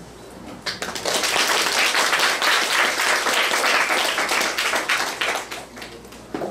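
Audience applauding. The clapping starts just under a second in, holds steady, and dies away near the end.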